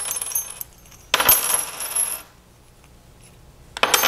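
Slotted metal masses clinking and clattering against one another and the weight hanger as weights are taken off a force-table hanger, with bright metallic ringing. A short clatter at the start, a louder bout about a second in, then another starting near the end.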